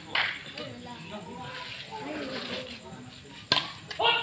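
Badminton racket strokes on a shuttlecock during a rally: short, sharp cracks, the loudest about three and a half seconds in, with another near the start.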